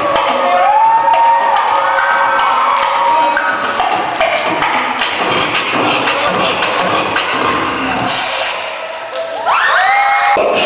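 Beatboxing into a handheld microphone through a PA: quick percussive clicks and thumps with a hummed, sliding melody line over them, and a rising vocal glide near the end.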